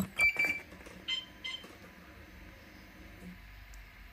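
A click as the Kymco CV3 scooter's power button is pressed, then a few short electronic beeps from the scooter in the first second and a half as its ignition switches on and the dash boots up.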